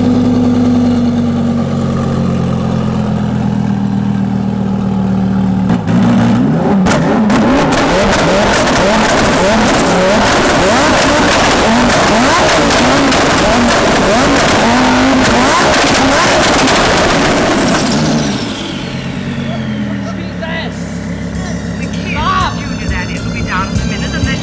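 Twin-turbo Lamborghini Huracán V10 held at raised revs while standing still. About six seconds in, its exhaust flame feature kicks in and the exhaust crackles and pops rapidly and continuously, a percussive racket that sounds a little unhealthy. Near eighteen seconds the revs drop away with a falling whistle, and the engine settles to a quieter running note.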